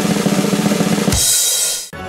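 Snare drum roll of fast, even strokes, ending a little over a second in with a bass drum hit and cymbal crash that cuts off sharply: the classic drum-roll build-up before a reveal.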